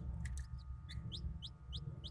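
Hatching Ayam Cemani chick peeping: short, high, rising peeps about four a second, starting about a second in, after a couple of faint clicks, over a low steady rumble.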